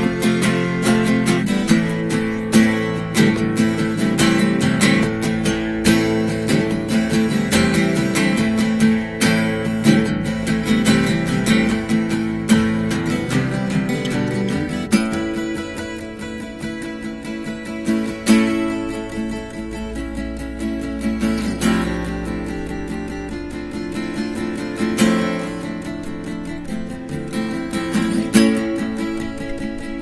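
Two acoustic guitars played together, strummed hard and busy for the first half, then dropping to a lighter, sparser passage from about halfway through, with stronger strokes returning near the end.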